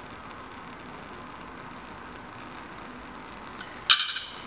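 A steady hiss, then near the end a single sharp metallic clink as steel tweezers are set down on the hard lab bench.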